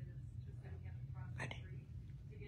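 A woman's quiet, soft-spoken voice saying one word about halfway through, over a steady low hum of room tone.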